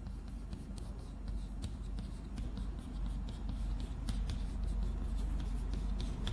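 Chalk writing on a blackboard: a run of short, irregular scratches and taps as characters are written stroke by stroke.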